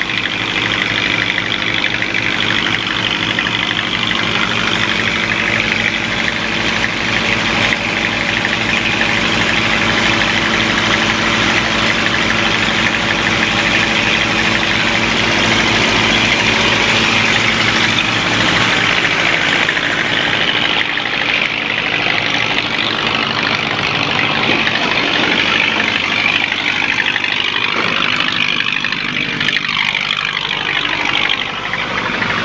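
Diesel engine of a river express boat idling steadily, a loud hum of several steady tones; its low rumble fades about two-thirds of the way through.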